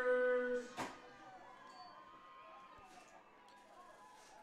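A voice holding one drawn-out sound for about half a second, a single sharp click just under a second in, then faint murmuring voices in the background.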